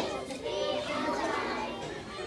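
A group of young children's voices overlapping, with a sharp knock right at the start.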